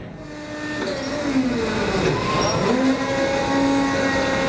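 Forklift engine running, its pitch dipping and rising again as the revs change.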